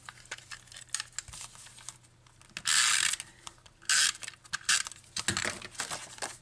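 Snail tape runner drawn across the back of a cardstock panel in two strokes: a longer one about two and a half seconds in, and a shorter one about a second later. Light clicks and rustles of card being handled come before and after.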